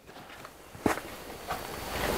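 Footsteps on a hard shop floor: one sharp knock about a second in and a fainter one soon after, over low room noise.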